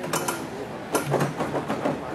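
A few irregular sharp clicks and knocks, one just after the start and a quick cluster from about a second in, over low room noise.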